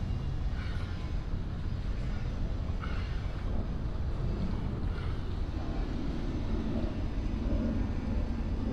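Wind buffeting the microphone outdoors: a steady low rumble with no pauses.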